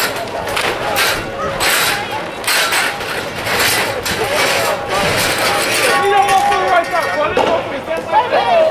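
Plastic sheeting of a party tent rustling and flapping in a regular rhythm of about two strokes a second as it is yanked and torn, under shouting voices. The strokes stop about six seconds in, leaving the voices.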